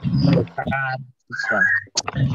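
Children's voices over a video call, with a brief shrill, whistle-like sound wavering high about one and a half seconds in.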